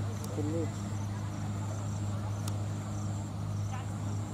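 Crickets chirping in a fast, even repeating pattern over a steady low hum, with a short distant shout about half a second in and a single sharp click near the middle.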